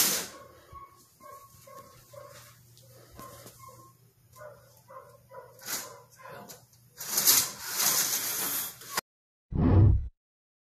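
Faint, short animal calls repeating about two to three times a second outside in the dark, typical of a dog barking at a distance. Late on comes a loud stretch of rushing noise that cuts off abruptly, then a short low boom of the TikTok end-card sound.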